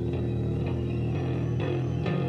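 Live band playing instrumental music: electric guitar and bass over a drum kit, with held low notes under drum and cymbal strokes.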